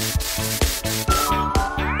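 Aerosol spray-paint can hissing in a steady spray over background music with a beat. A rising whistle-like tone comes in near the end.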